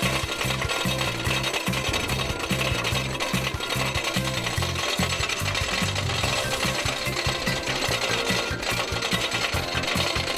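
Wooden roller coaster's lift chain clattering rapidly and steadily as the train is hauled up the lift hill, with music playing underneath.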